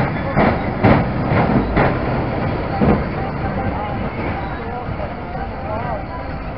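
Fairground mine-train roller coaster cars rattling along their track as they pass, with a run of sharp clacks in the first three seconds, over background voices.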